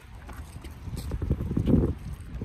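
Wind rumbling across a phone's microphone while walking outdoors, uneven and gusting, louder toward the end, with scattered soft knocks.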